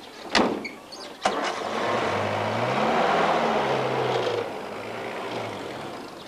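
A car door slams shut, then the car's engine starts and it pulls away, the engine pitch rising and then falling as it goes.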